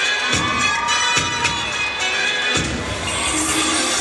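An audience, many of them young, cheering and shouting over loud dance music, with sharp hits in the music early on and the cheering swelling near the end.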